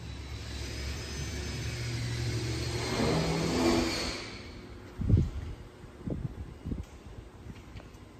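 A car engine accelerating, rising in pitch and growing louder to a peak about three and a half seconds in, then fading away. A few short low thumps follow.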